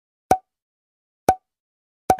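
Two short, identical pop sound effects about a second apart, against dead silence, marking photos popping onto the screen in an edited slideshow.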